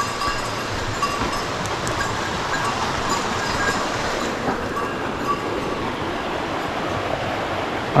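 Small mountain stream rushing steadily over stones and fallen wood in little cascades.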